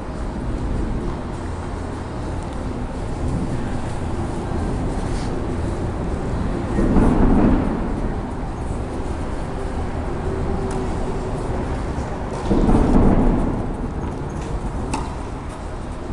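A steady low rumble of hall and microphone noise, with two louder muffled swells about a second long, near seven and near thirteen seconds in. A few faint knocks from tennis balls being struck on the court.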